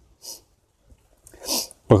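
A man's short, sharp breath noise about a second and a half in, just before he speaks again, after a faint puff of breath near the start.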